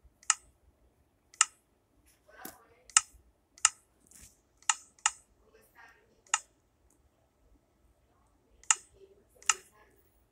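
A series of about nine short, sharp clicks at irregular intervals, with a gap of about two seconds before the last two.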